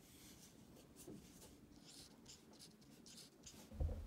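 Dry-erase marker writing on a whiteboard: a run of faint, short strokes one after another. A low thump near the end.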